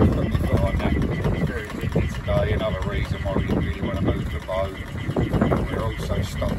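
12 V Whale Gulper diaphragm waste pump running, pushing black-water sewage through a hose into a plastic drum, with irregular gurgling and glugging as the drum fills.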